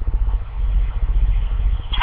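A steady low mechanical drone with a faint hiss over it, in a pause between spoken lines.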